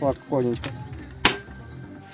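A single sharp crack about a second in: a scored ceramic wall tile snapping along its score line.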